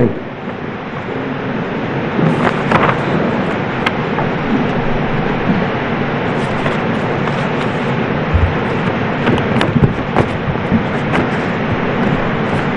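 Courtroom background noise: a steady hiss of room sound with faint, indistinct murmuring voices and a few short clicks and knocks.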